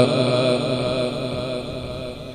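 The end of a male Quran reciter's long melodic held note, fading away gradually through the sound system.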